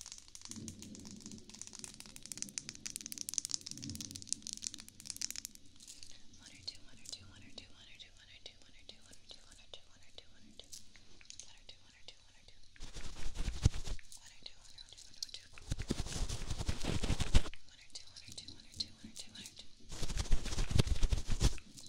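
Soft makeup brushes stroked over the microphone: crackly bristle strokes at first, then two louder sweeping passes of about a second each in the second half.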